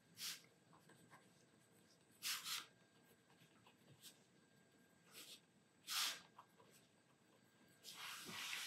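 A pen nib scratching on paper in four or so short strokes, with near silence between them.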